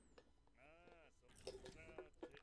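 Faint dialogue from the anime episode playing in the background: one short line in a voice that rises and falls in pitch, like a question, about half a second in, followed by more quiet speech near the end.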